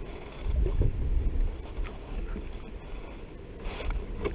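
Wind rumbling on an action-camera microphone, a steady low buffeting that swells briefly about half a second in, with a few faint knocks as a bass is lifted by hand into a kayak.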